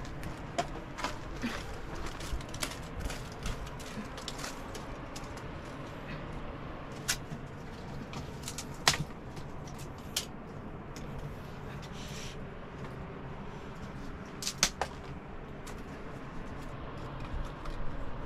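Dry sticks being handled and laid over a fire bed of ash: scattered light clicks and knocks of wood on wood and stone, with a few sharper knocks now and then.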